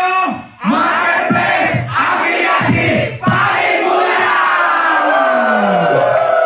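A crowd of people shouting together in unison: several short shouts, then one long drawn-out shout that falls in pitch.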